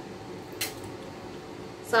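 A single short metallic click from a beehive frame grip's pivoting jaws being worked in the hands, against faint room noise.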